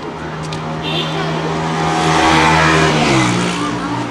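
A motor vehicle passing close by: its engine note grows louder to a peak a little past the middle, then drops in pitch as it goes past.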